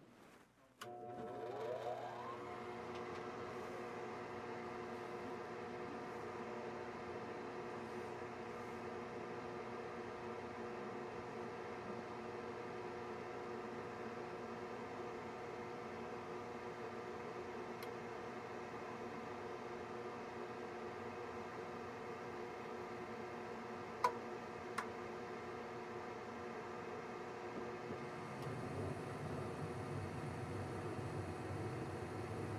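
Concord gas furnace going through its start-up: the draft inducer motor starts about a second in, spins up and runs with a steady hum. Two sharp clicks come near the end, then the burners light and add a low rumble.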